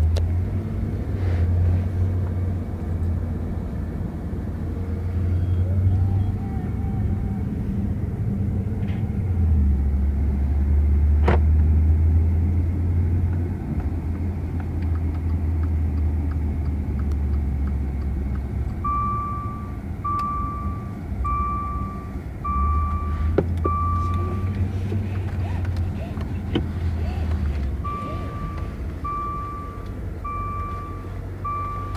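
Interior sound of a Maserati sedan being driven slowly: a low engine and road rumble that swells and eases. In the second half, a car warning chime beeps evenly about once a second, in two spells.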